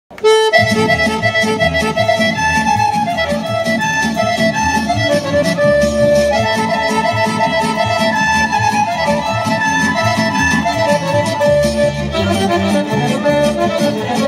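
Serbian folk dance music starts abruptly just after the opening: a quick, running melody over a steady bouncing bass and chord accompaniment.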